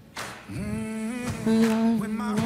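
A woman singing slow, held notes into a microphone, without distinct words. The voice comes in about half a second in and grows louder about halfway through.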